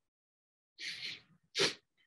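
A person sneezing into a microphone: a breathy rush a little under a second in, then a short, sharp, louder burst.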